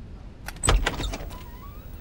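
A dull thud with a short clatter of knocks about half a second in, followed by a faint rising squeak.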